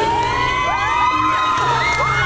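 A crowd of schoolchildren cheering and shouting, many high voices overlapping and rising and falling, over dance music with a steady bass.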